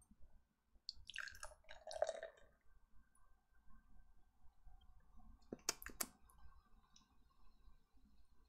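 Barrel-aged stout poured from a can into a glass, faint, a thin steady trickle of liquid. Three quick sharp clicks come a little after halfway.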